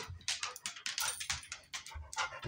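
A husky's claws clicking on a hardwood floor as she paces around, a quick irregular patter of ticks.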